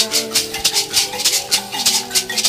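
An ensemble of gourd shakers and plucked box-resonated thumb pianos (mbira or kalimba) playing. The shakers keep a steady beat of about four strokes a second over short, ringing, interlocking notes.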